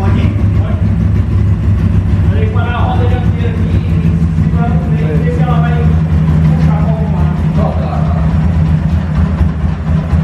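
Small Honda motorcycle's engine idling steadily as the bike is positioned on a chassis dynamometer's roller.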